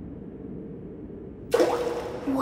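A low, steady background hum while the dropped rock falls, then about a second and a half in a sudden splash as the rock hits water at the bottom of the deep chasm.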